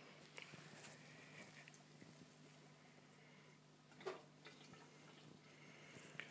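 Near silence, with the faint steady hum of a small aquarium air pump running, and one brief faint noise about four seconds in.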